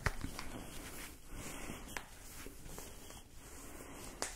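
Faint rustling and swishing of a tight, stretchy compression calf sleeve being pulled up the leg, with a couple of soft clicks.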